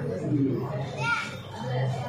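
Speech: a man and a child talking, the man's low voice near the start and end with a brief high-pitched child's voice about a second in.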